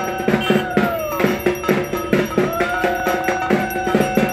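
Rhythmic puja percussion: fast, even drum strokes with metallic clanging, about four to five strikes a second, under a sustained tone that slides down in pitch about a second in and climbs back up past two seconds.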